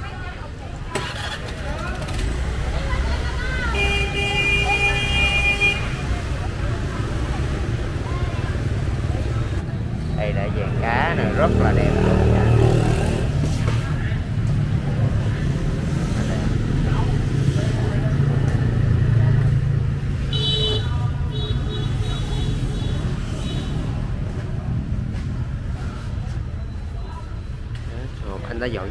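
Street traffic, mostly motorbikes, with engines running steadily. A vehicle horn sounds for about two seconds roughly four seconds in, then honks a couple more times around twenty seconds in.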